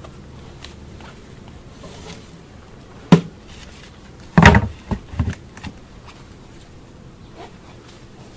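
Honeybees buzzing steadily around an open hive, with a sharp knock about three seconds in and a louder clatter of knocks a second or so later as the hive lid is set down onto the top box.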